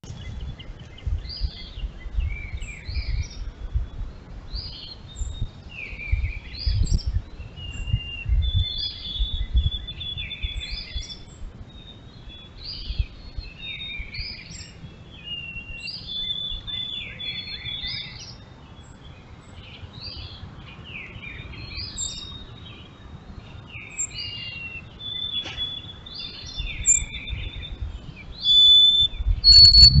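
Several songbirds singing, their songs overlapping in many short rising and falling phrases. Under them runs a low rumble that swells loud near the end.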